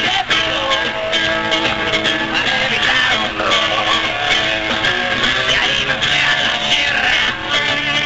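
Rock band playing live, with electric guitar to the fore.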